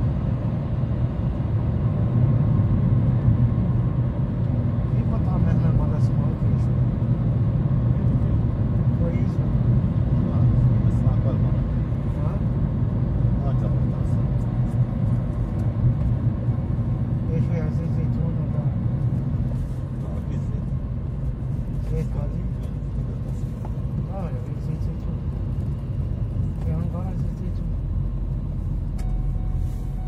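Steady low road and engine rumble heard from inside a moving vehicle, easing slightly about two-thirds of the way through, with faint indistinct voices at times.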